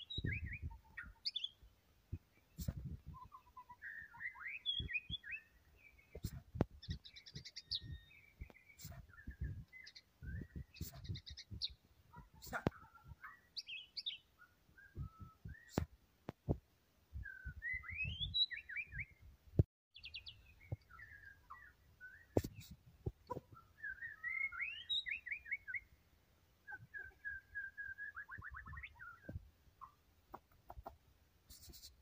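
White-rumped shama singing a long, varied song of whistled phrases and rapid trills, one phrase after another with hardly a break. Sharp clicks and low rumbling noise come in between the phrases.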